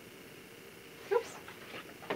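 A woman's voice exclaims "Oops!" once, briefly, about a second in, over quiet room tone.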